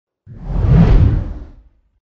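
A single whoosh sound effect for a logo reveal: it swells in about a quarter second in, peaks near the middle and fades away before the end.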